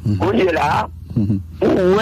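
A man speaking, with a steady low electrical hum beneath the voice.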